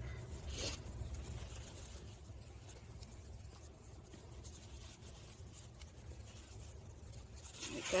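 Faint rustling and scraping of a fabric harness strap being fed through its metal clip under a stroller seat, over a low steady hum.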